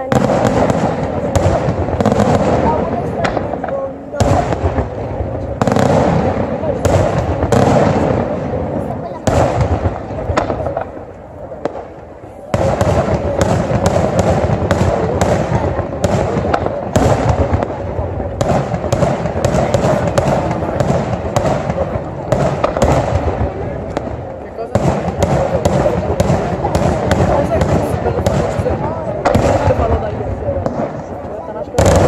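Daytime fireworks display: a continuous barrage of rapid bangs and crackling shell bursts, easing into a short lull about eleven seconds in before resuming at full intensity.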